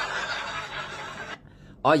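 A man's breathy, hushed laughter that stops about a second and a half in.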